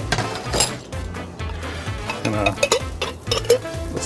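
Metal spoon clinking against a glass jar as tomato sauce is scooped out: a few sharp clinks about a second apart, over faint background music.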